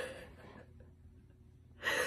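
A short pause in a woman's talk, ending in a sharp, breathy gasp of laughter near the end.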